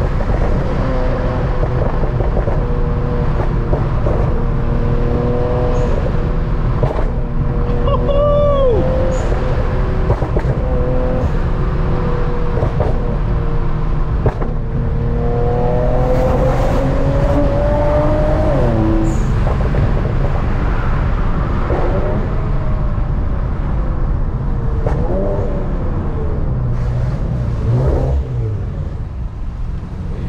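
Infiniti Q50's VR30 twin-turbo V6, tuned on E85 with bolt-ons, heard from inside the cabin while driving under load. Its pitch climbs for several seconds and then drops off, as when the car pulls through a gear and shifts.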